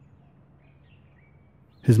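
Quiet room tone with a steady low hum and a few faint, short, high chirps from distant birds about half a second to a second in. A man's narrating voice starts near the end.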